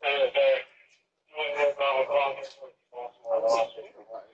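Voices talking in short phrases, the words not made out.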